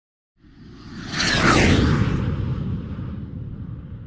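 Whoosh sound effect for a title animation: a low rumble swells in, a bright swish with a falling sweep peaks about a second and a half in, and the rumble then slowly fades.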